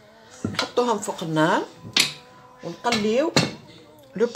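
Mostly a woman's voice talking, with a few sharp clicks from a spatula knocking against a stainless steel pot as she pushes butter around it.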